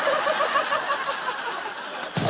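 A person laughing in a quick run of short, high-pitched pulses, about seven a second, trailing off about a second and a half in, over a steady background hiss.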